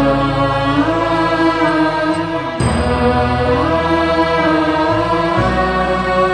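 Slow chanted Christian funeral hymn: a voice holding long notes that slide between pitches over a steady low accompaniment, with a short break about two and a half seconds in.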